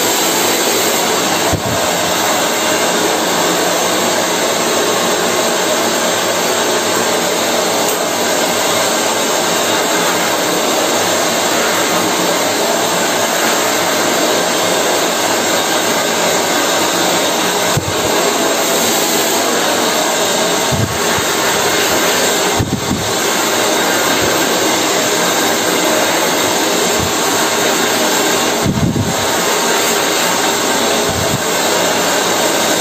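Handheld hair dryer blowing steadily at close range while hair is dried over a round brush, with a few brief low thumps along the way.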